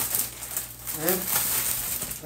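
Plastic zip-top freezer bag rustling and crinkling as packs of wrapped burger patties are shaken out of it onto a kitchen counter.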